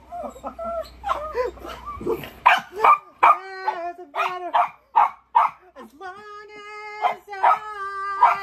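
Small white curly-coated dog barking in a quick series of short calls, about two or three a second, set off by its owner's singing.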